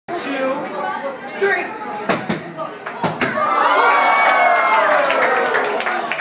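A basketball bouncing on a hard floor, about five knocks, among children's chatter. Then a crowd of children lets out a long cheering cry that slides slowly down in pitch and is the loudest part.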